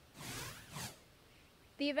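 Swoosh sound effect of a TV news graphic transition: a sweep of noise that swells and fades in under a second, in two surges. A woman starts speaking near the end.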